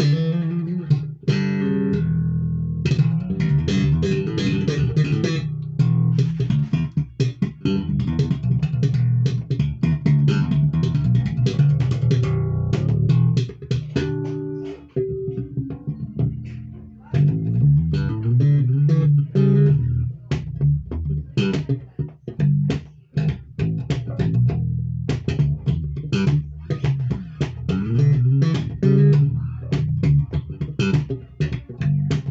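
Dragonfly D-Fly CJ5 five-string electric bass played with its active preamp set to a scooped tone: bass and treble boosted, mids notched. A continuous run of plucked bass lines, broken only by a few short pauses.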